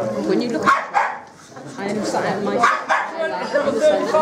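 A dog barking amid people talking.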